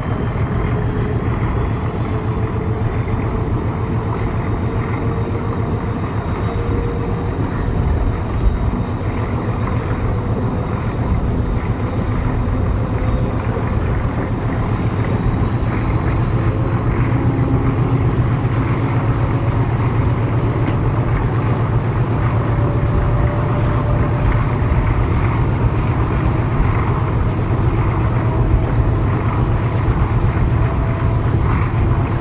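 CP 1557, an MLW MX620 diesel locomotive with an Alco 251 V12 engine, running under load as it hauls the train, heard from a coach window behind it. The sound is a steady low engine note with wind on the microphone, growing a little louder partway through.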